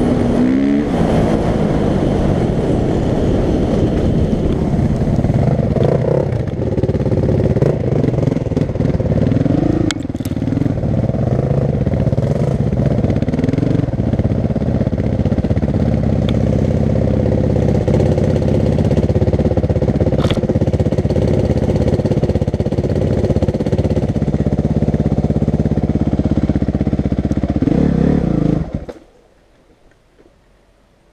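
A 450cc single-cylinder four-stroke dirt bike ridden at speed, its engine running hard with the pitch rising and falling a few times as it changes speed, with a few sharp clicks along the way. A second or so before the end the engine cuts off suddenly.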